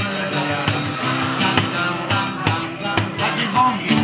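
A live band playing an Italian pop song, with a steady beat.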